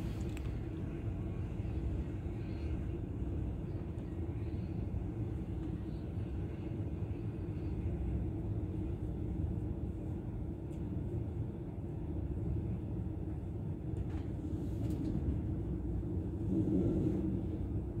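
Running noise heard inside a moving passenger train carriage: a steady low rumble from the wheels on the track with a constant low hum, swelling slightly near the end.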